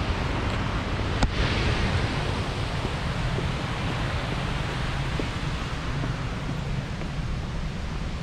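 Steady wind noise buffeting the microphone, with a single sharp click about a second in.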